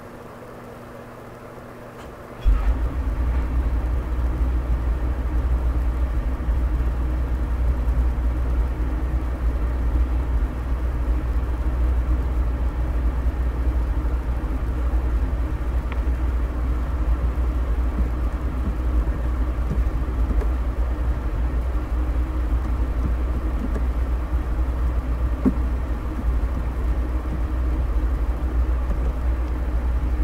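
A loud, steady low rumble comes in suddenly about two and a half seconds in, replacing a faint hum, and runs on without a break.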